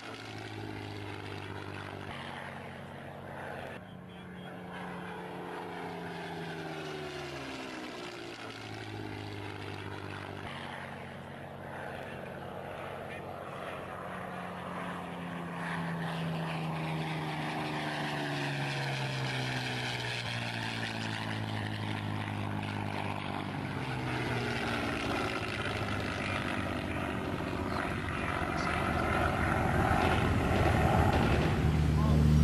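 Supermarine Spitfire's V12 piston engine droning in flight. Its note glides down several times as the plane passes, and it grows louder near the end.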